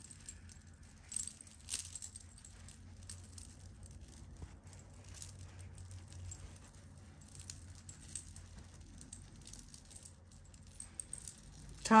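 Metal jewelry chains and beads clinking and jangling faintly as a hand sorts through them, with two louder clinks in the first couple of seconds.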